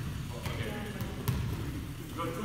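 A volleyball being struck during passing play: a few sharp smacks of hands and forearms on the ball, heard in a large gym, with players' voices in the background.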